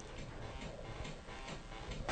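Faint ticking with faint music underneath.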